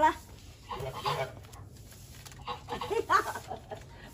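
A woman laughing in a quick run of short "ha-ha" bursts through the last second and a half, after a brief call at the start.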